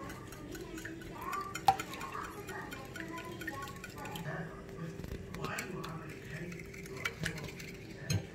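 Wire whisk beating eggs in a ceramic bowl, the metal wires clicking and clinking against the bowl at irregular moments.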